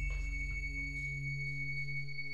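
Background film score: a sustained synthesizer drone of held steady tones, low and high, its deep bass slowly fading.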